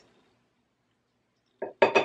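Near silence, then three quick clinks near the end: a wooden spoon tapped against the rim of a large glass bowl to knock off salsa.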